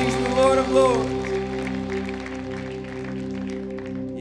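Sustained keyboard pad chord holding steady under a worship set. A man's voice comes over it in the first second, then light scattered clapping.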